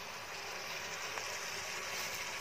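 Onion, spring onion greens, curry leaves and green chillies sizzling steadily in hot oil in a kadhai.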